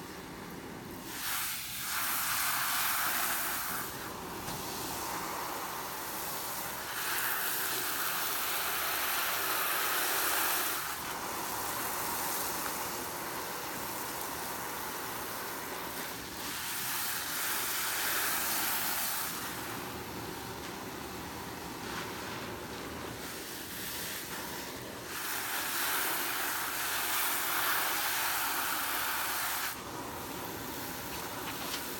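Foam-soaked sponges, first a coarse brown one and then a yellow one, squeezed and wrung by hand in a tray of sudsy water: wet squelching with the hiss of foam, swelling in several long spells of a few seconds each.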